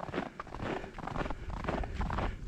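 Footsteps crunching through fresh snow, a steady run of repeated steps.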